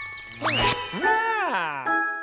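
Cartoon sound effects over bright music: ringing bell-like dings, a quick upward pitch slide about half a second in, then a longer downward slide.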